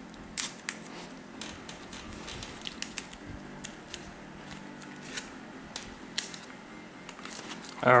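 Folding knife slitting the packing tape on a cardboard mailer, then the cardboard being handled and pried apart, with scattered sharp cracks and crinkles; the loudest come about half a second in.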